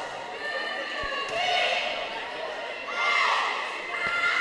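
Live volleyball rally in a gym hall: players and spectators calling and shouting, with the sharp smack of a ball being hit about a second in.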